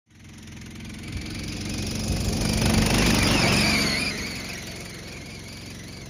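A John Deere riding lawn mower souped up for speed, its engine running hard as it comes closer, loudest about three seconds in, with a high whine that drops in pitch as it passes, then fading.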